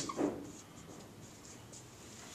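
Dry-erase marker writing on a whiteboard, with a short, louder stroke in the first half second, then faint.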